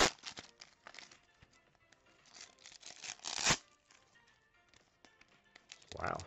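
Foil wrapper of a baseball trading card pack being torn open and crinkled by hand: a sharp rip right at the start, soft crinkling, then a louder rip about three and a half seconds in.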